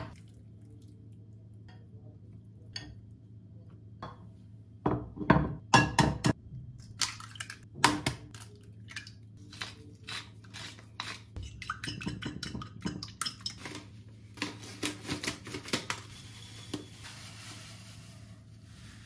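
Kitchen utensils knocking and clinking against glass and ceramic bowls while food is prepared: a spoon in a glass bowl of flour, a few loud knocks, then a long run of quick clicks of eggs being beaten in a ceramic bowl. Near the end comes a soft rustling pour of panko breadcrumbs into a bowl.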